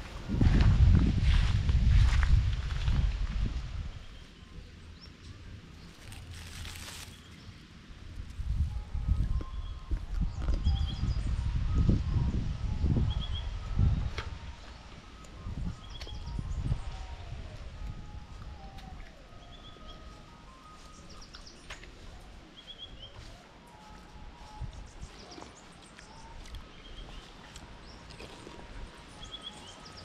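Footsteps through dry grass with low rumbling noise on the phone's microphone for the first few seconds and again from about eight to fourteen seconds in, over an outdoor background where small birds chirp faintly and repeatedly.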